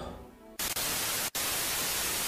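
Television static: a steady, even hiss of white noise used as a transition effect. It starts about half a second in and drops out for an instant near the middle.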